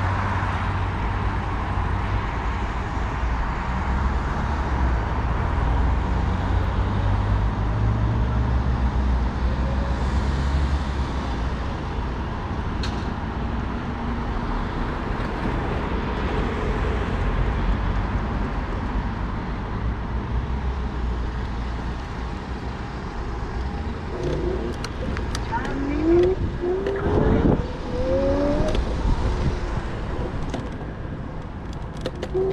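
Road traffic at an intersection: cars passing, with a steady low rumble that is strongest in the first half. Near the end, a rising whine from the electric scooter's motor as it pulls away.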